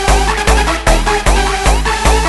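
Instrumental stretch of a bouncy (scouse house) dance track: a heavy kick drum on every beat, about two and a half a second, under short synth notes that slide up in pitch.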